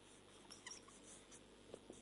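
Faint squeak and scratch of a marker pen writing on a whiteboard, in a few short strokes starting about half a second in.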